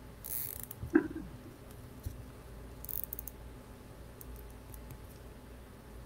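A plastic zip tie being pulled tight through its ratchet head, making two short rasps, the first about half a second in and the second about three seconds in, with a brief louder sound in between about a second in.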